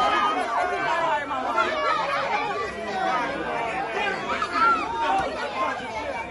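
A crowd of spectators talking and calling out at once, many voices overlapping with no single speaker standing out.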